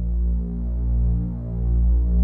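A low, steady electronic drone from a background score, swelling and fading in slow waves.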